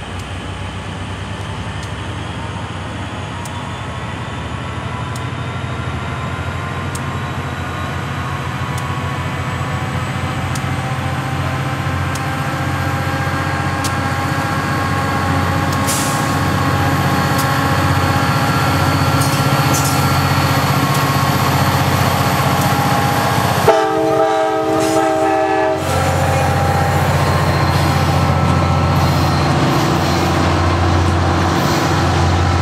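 Virginia Railway Express RP39-2C diesel locomotive approaching and passing, its engine drone growing steadily louder. About three-quarters of the way through it gives one short horn blast of about two seconds, a hello to the railfans by the track. Bilevel passenger coaches roll past near the end.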